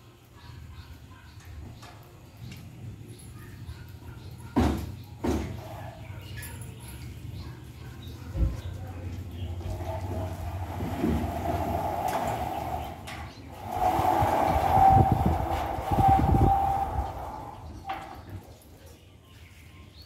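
Steel sliding-folding gate pushed open by hand, its three wheels rolling along a metal ground rail with a rumble and a squeal that is loudest in the second half. A few clanks come before the rolling starts, about five and eight seconds in.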